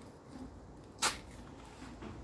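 Hands handling a thin plastic cup that holds a pelargonium cutting, quiet apart from one short, sharp plastic click about a second in.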